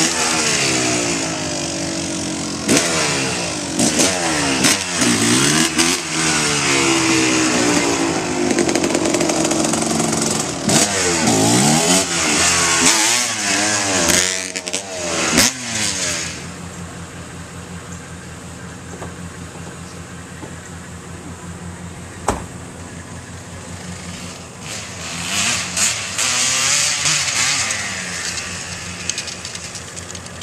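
Kawasaki KX250 two-stroke dirt bike engine revving up and down again and again as it rides close by. About halfway through it drops away into the distance, with a single sharp click a few seconds later and another, fainter burst of revving near the end.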